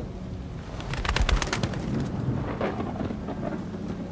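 A crow: a quick run of sharp wing flutters about a second in, followed by short throaty calls, over a low rumbling ambience.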